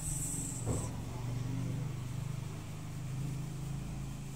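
A steady low motor hum, like an idling vehicle engine, with a brief rustle of cloth being shaken out near the start and a single light knock.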